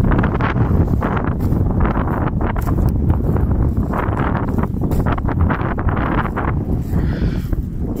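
Strong gusty wind buffeting the microphone, a loud, uneven low rumble with irregular thumps.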